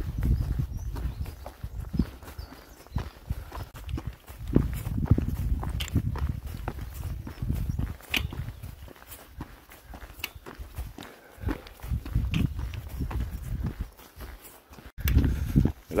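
Footsteps on a dirt and gravel path, a steady run of short scuffs and crunches, with wind buffeting the microphone in uneven low gusts.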